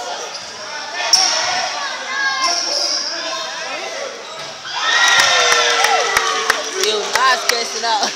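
A basketball bouncing on a gym's hardwood floor during play, with players and spectators shouting. The voices get louder about five seconds in, followed by a quick run of sharp bounces near the end.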